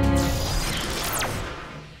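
Animated-series scene-transition sound effect: the held final chord of the music gives way to a sudden burst of noise with a fast falling sweep about a second in, then fades away gradually.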